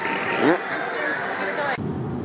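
Background chatter of a busy indoor room with a short rising vocal sound about half a second in. Near the end the sound cuts abruptly to the low rumble of a car's cabin on the move.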